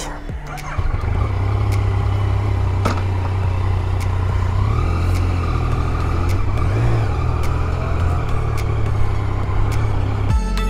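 Yamaha Tracer 900 inline three-cylinder motorcycle engine starting about a second in, then running steadily, with a few rises in revs as the bike pulls away.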